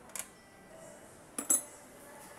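Light metallic clinks as the fuel pump's steel retaining bracket is lifted off the tank and handled: one faint clink just after the start, then a louder double clink about a second and a half in.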